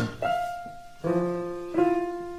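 Piano playing three struck chords about two-thirds of a second apart, each held and left to fade.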